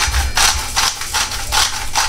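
Hand-twisted salt grinder grinding salt crystals: a run of short gritty rasping strokes, about four or five a second.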